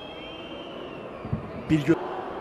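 Football stadium crowd noise with long whistles from the stands rising and falling in pitch, and a brief loud voice-like burst near the end.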